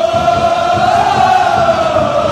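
Large crowd of football supporters chanting in unison, many voices holding one long sung note that rises a little about halfway and then falls back.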